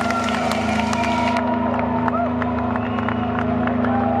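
A live rock band's amplified guitars and bass ring out on one steady held chord, with the crowd cheering and clapping over it.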